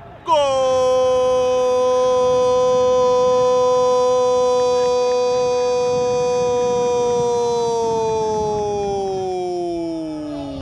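A football commentator's long drawn-out goal shout, one loud held note for about nine seconds that falls in pitch near the end.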